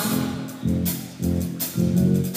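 Live church band of keyboards, electric guitar and drum kit playing an instrumental groove. Low bass notes and drum hits land about twice a second.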